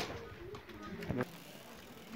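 Faint background voices with quiet outdoor ambience, after a short click at the very start.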